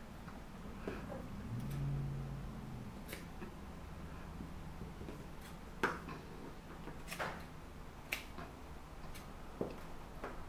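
Fabric scissors making several separate crisp snips through a folded cotton bed sheet, cutting the spots a rotary cutter left uncut, with a brief low hum about two seconds in.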